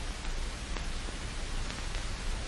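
Steady hiss of an old film soundtrack, with a few faint clicks.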